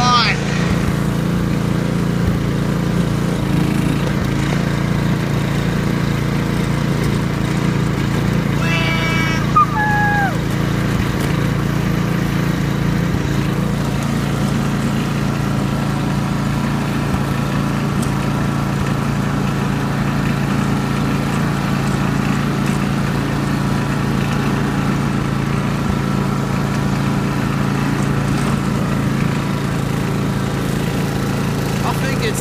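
Ride-on lawn mower engine running at a steady speed while the mower is driven over grass. A short voice-like sound and a brief sharp peak come about nine to ten seconds in.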